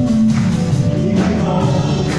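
Live church worship band playing a song: singers over acoustic guitar, electric guitar and a drum kit keeping a steady beat.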